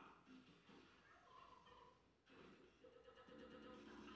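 Near silence: faint room tone with a faint, distant murmur.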